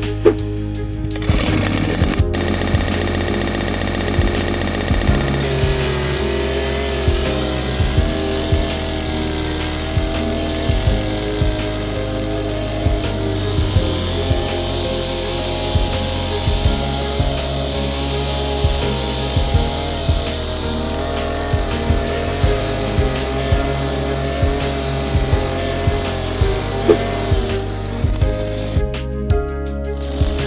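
Background music with a steady beat, mixed with a 63 cc two-stroke earth auger engine running as the auger bores into the soil.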